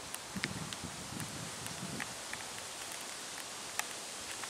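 Soft footsteps on a concrete path, three steps about 0.7 s apart, with a few faint high ticks over a steady outdoor hiss.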